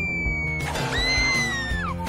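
Cartoon-style falling sound over background music: a thin whistle gliding slowly downward fades out early, then a long high wail sets in about a second in and drops away sharply near the end.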